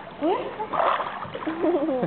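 Pool water splashing around a toddler held in a swimming pool, a short splash coming about a second in.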